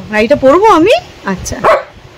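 German Shepherd vocalizing close up: a long whining yowl that slides up and down in pitch through the first second, then two short rising yelps.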